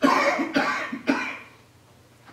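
A person coughing loudly, three coughs in quick succession, dying away by about a second and a half in.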